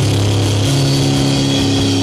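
Heavy metal band playing live: distorted electric guitar and bass through Marshall amps hold a sustained low chord, changing note about a third of the way in, with no drum beat under it.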